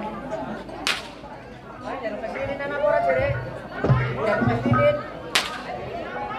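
Two sharp cracks of a performer's whip (pecut), about four and a half seconds apart, over crowd voices.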